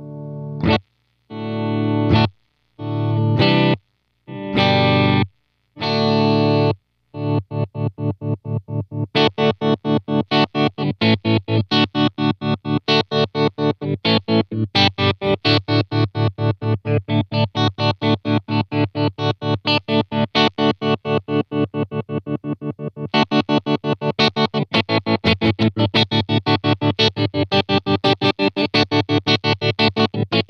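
Electric guitar chords played through a Dreadbox Treminator tremolo pedal, the volume chopped fully on and off. For the first several seconds it cuts in long, uneven blocks with silent gaps, then settles into a fast, even pulsing about four times a second.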